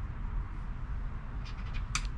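A low steady background rumble, then near the end a poker chip starts scraping the coating off a scratch-off lottery ticket: a few short scratches.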